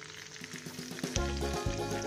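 Battered, chip-crusted flounder frying in oil in a pan: a steady sizzle with small crackles. Background music with low held notes comes in about a second in.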